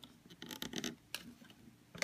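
Faint scratching and rubbing of a rubber loom band being stretched and wrapped around a plastic loom pin by fingers, a few short soft scrapes scattered through the moment.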